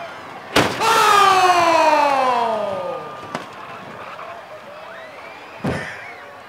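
An SUV smashing into a plastic portable toilet: a sharp crash about half a second in, followed by the engine note falling steadily in pitch over about two seconds. Two more sharp knocks follow, one about halfway through and one near the end.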